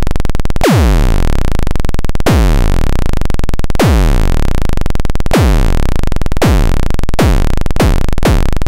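A synthesizer tone retriggered over and over by a looping ADSR envelope. Each cycle starts with a sharp downward pitch sweep, like a zap or a synth kick. The repeats come faster as the decay is shortened, from about one every one and a half seconds to nearly two a second by the end.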